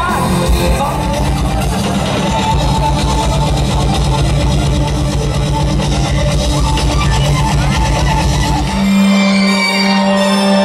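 Heavy metal band playing live and loud, with distorted guitar, bass and drums. About nine seconds in, the drums and low end drop out, leaving a steady held tone.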